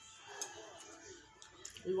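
Quiet eating sounds: a few short, sharp mouth clicks and smacks from chewing, under a faint murmur of voice.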